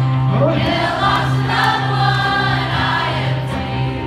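Live worship music: a band with acoustic guitar and a lead singer, the crowd singing along as a choir of voices over a steady low held bass note.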